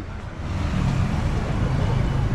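City street traffic noise: vehicle engines and tyres on a wet road, a steady rumble with a low hum that grows a little louder in the first half second.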